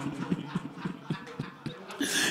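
Scattered soft thumps at an irregular pace from the mourning audience, typical of mourners striking their chests, as the chanted elegy fades into a pause.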